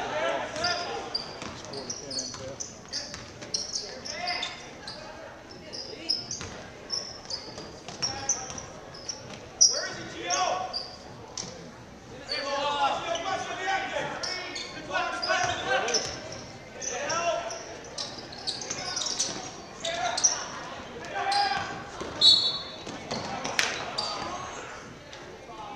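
Sounds of a basketball game on a gym floor: many short sneaker squeaks, the ball bouncing, and shouts from players and spectators, with a couple of sharp louder impacts.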